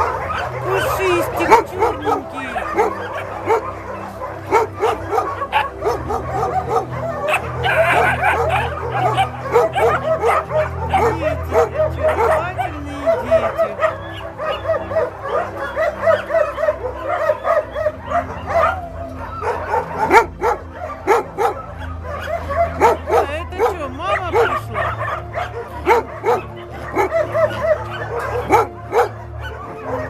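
Many puppies and young dogs barking and yipping at once, their short calls overlapping without a break.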